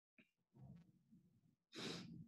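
Near silence, with a faint brief sound about half a second in and a short breath into the microphone near the end.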